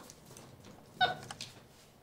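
White-faced capuchin monkey giving one short, sharp call about a second in, with a few light clicks of her climbing on the cage wire and ropes around it.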